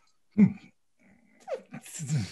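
Short wordless vocal sounds from people: a low hum about half a second in, then sounds that fall in pitch, ending in a breathy laugh.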